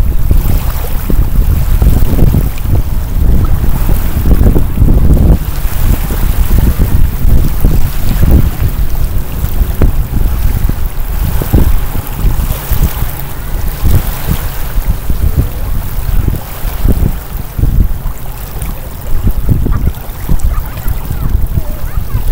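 Strong wind buffeting the microphone in gusty, rumbling swells, with small lake waves lapping at the shore underneath.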